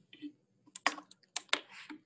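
Several short, sharp clicks and taps, the three loudest coming in the second half, with soft rustling between them.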